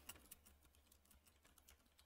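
Very faint computer keyboard typing: a quick run of soft key clicks as a short line of text is typed.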